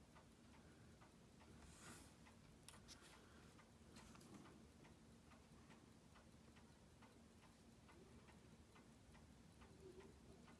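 Near silence: faint, regular ticking, as from a clock in the room, over a low steady hum, with one slightly louder tap about three seconds in.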